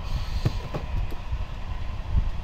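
Cardboard trading-card boxes being handled and shifted on a table: a few soft knocks over a low, steady rumble.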